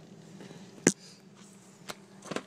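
A single sharp click about a second in, with a fainter click near the end, from hand-tool work on the Atomic 4 engine's valve springs, over a steady low hum.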